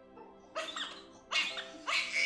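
Background music holding a steady chord, with three short cries from an infant.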